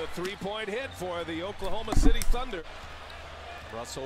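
Basketball game broadcast audio: a TV commentator talking at low level, with a single thud about halfway through, like a basketball bouncing on the hardwood court.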